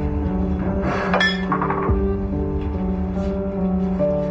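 Background score of steady held tones, with a brief cluster of light clinks about a second in as kitchen things, such as a glass bottle, are handled on the counter.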